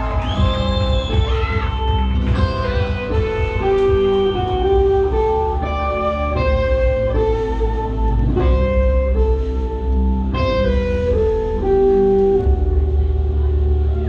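Live rock band playing an instrumental passage, with guitar, bass and drums. A sustained melody line steps from one held note to the next over a heavy low end, with occasional cymbal-like hits.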